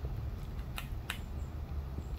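Two faint, sharp clicks about a third of a second apart over low room noise: buttons being pressed on the solar light's small handheld remote to set its motion-sensor mode.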